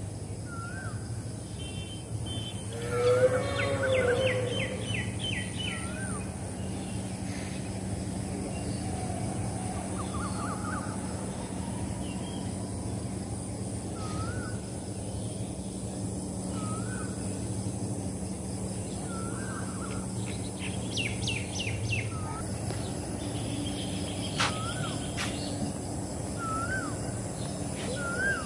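Birds calling: one bird repeats a short rising-and-falling whistled note every few seconds, with a louder call about three seconds in and a quick run of high notes later on, over a steady low hum.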